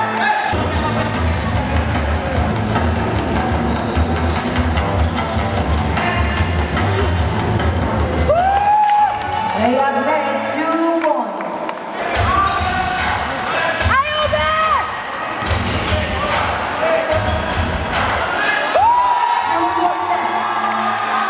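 Basketball game sounds: a ball bouncing on the court and short squeaks from sneakers, with players' voices, over background music with a heavy beat that drops out briefly twice.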